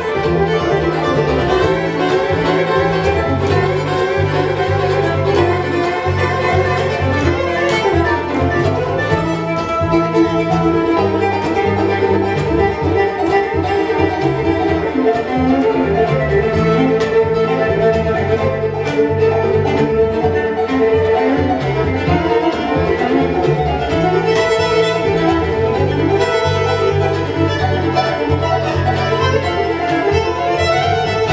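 Live bluegrass band playing an instrumental, with fiddle in the lead over upright bass, acoustic guitar and banjo.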